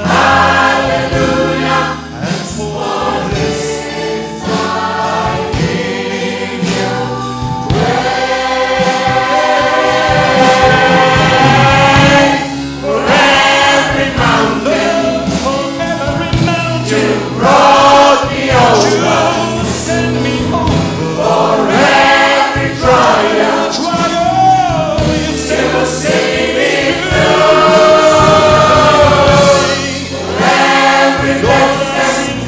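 Live gospel choir singing with band accompaniment, a man leading at the microphone; the singing is loud and sustained throughout, with long held notes and sliding phrases.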